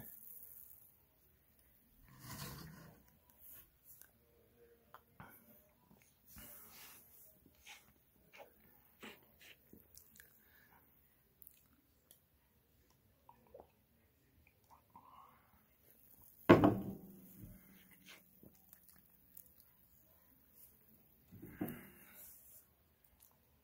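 Someone drinking cola from a glass: faint sips and swallows with small clicks, mostly quiet. One louder, sudden sound stands out about three-quarters of the way through.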